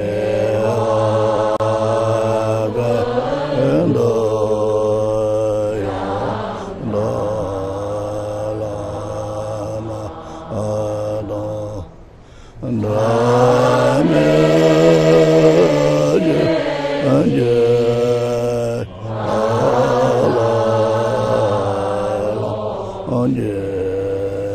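A congregation chanting a Buddhist prayer together in slow, drawn-out phrases, with short breaks between lines, the clearest about halfway through.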